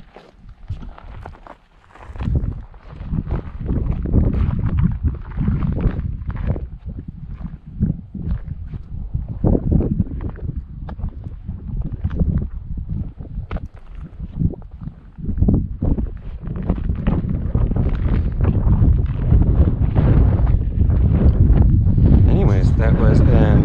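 Footsteps on gravelly ground while walking, with wind buffeting the microphone as a low rumble. Quieter for the first two seconds, louder over the last few.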